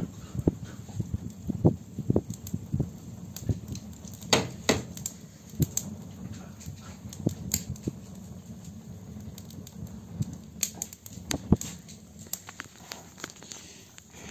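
Irregular light clicks and knocks, with a few louder knocks, as logs are arranged in a wood-burning stove that is burning poorly, over a low steady hum.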